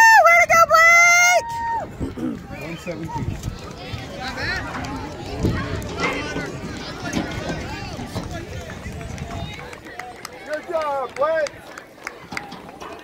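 A loud, high-pitched wordless cheering yell, held for about a second and a half at the start. Then a murmur of spectators' voices with scattered shorter calls.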